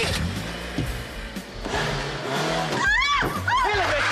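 A car's engine revving as the car pulls away, over background music, with a sharp yell about three seconds in.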